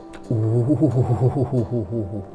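A man's low, drawn-out vocal sound, wavering in pitch, starts a moment in and lasts about two seconds. Quiet background music with steady held notes plays under it.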